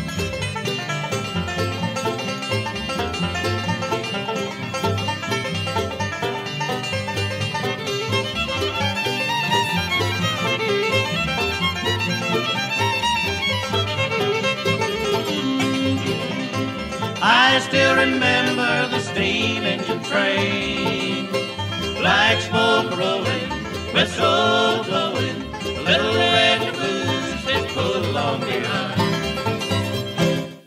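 Bluegrass band playing the instrumental close of a song, with banjo and fiddle over guitar and bass. In the second half, loud phrases of sliding notes come in short bursts, and the tune reaches its end.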